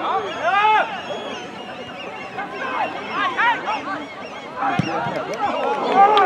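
Footballers' short wordless shouts and calls on the pitch, several in quick bursts, with a single thump about five seconds in.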